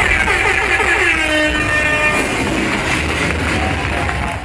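Loud music from the DJ's sound system with a steady deep bass, and a pitched sound effect sliding downward over the first couple of seconds.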